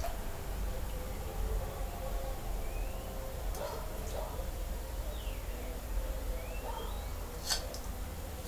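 A teaspoon clinks once, sharply, against a glaze pot near the end as it is dipped for more glaze. Before that there are a few faint high chirps, some rising and one falling, over a low steady hum.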